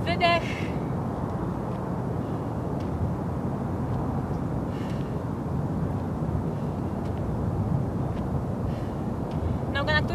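Steady outdoor background noise, an even rumble and hiss with no clear pattern. There is a brief snatch of a woman's voice just after the start, and her voice comes in again at the very end.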